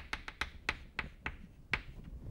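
Chalk tapping and scraping on a chalkboard while writing: about a dozen short, sharp taps at an uneven pace, the last near the end a little louder.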